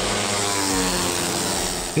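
Small single-cylinder Suzuki Raider R150 motorcycle engines running at high revs at speed: a buzzing engine note that drifts up and down in pitch over a steady hiss.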